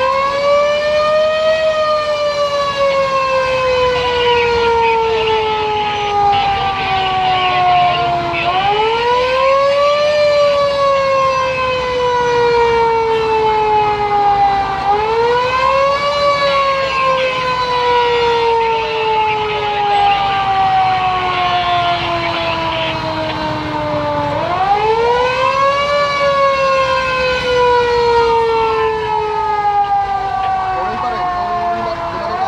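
Fire truck siren wailing in slow cycles. Each cycle rises quickly for about a second and then falls slowly for several seconds; it starts a new rise three times, roughly every six to nine seconds.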